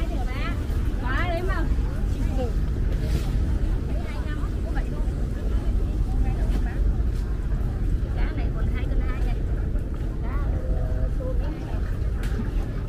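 Background chatter of vendors and buyers at a seafood market, with scattered raised voices over a steady low rumble.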